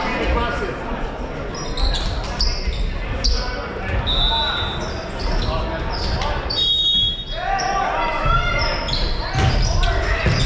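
Busy gymnasium din in a large, echoing hall: many voices chattering and calling out, with scattered thuds of volleyballs being hit and bouncing on the hardwood floor. A couple of brief high squeaks cut through about four and seven seconds in.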